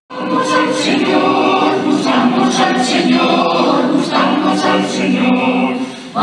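Mixed choir singing a religious song in Spanish. The singing cuts in abruptly at the start and holds a full, steady level throughout.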